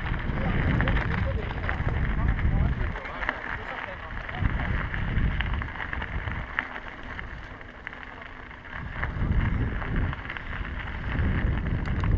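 Wind buffeting the microphone of a camera riding on a moving mountain bike, a low rumble that surges and eases, dropping away about eight seconds in before building again, with tyres crunching on a gravel track.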